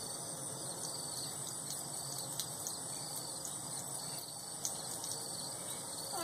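Crickets and other insects trilling steadily, with a few faint ticks.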